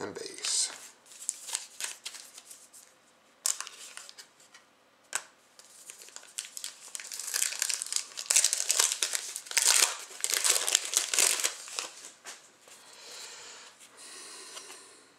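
Foil wrapper of a Zenith hockey card pack being torn open and crinkled, with a few sharp clicks in the first half. The crinkling is densest and loudest past the middle as the cards are pulled out of the wrapper and handled.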